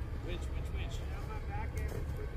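Vehicle engine idling with a steady low rumble during a snow-trail winch recovery, with faint distant voices talking over it.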